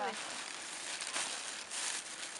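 White plastic bag crinkling and rustling as it is handled and pulled out of a backpack, louder in the second half.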